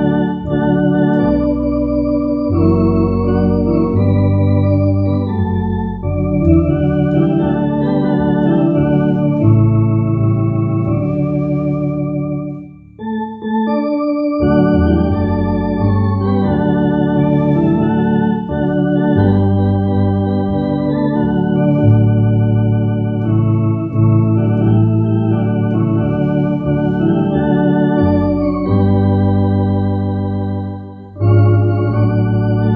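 MD-10 Evo electronic organ playing a slow hymn: sustained chords over a low bass line, with a short break between phrases about thirteen seconds in.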